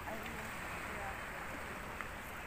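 Steady outdoor ambience at the edge of calm sea water, with faint voices in the distance.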